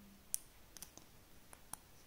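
Several faint, sharp clicks, the loudest about a third of a second in: a plastic locking stitch marker being snapped onto a crochet stitch and handled.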